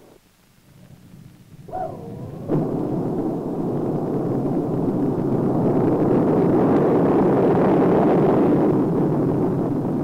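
Titan IIIA rocket liftoff: after a brief wavering tone and a sharp crack about two and a half seconds in, the engines' rumbling roar starts suddenly and builds steadily to its loudest near the end.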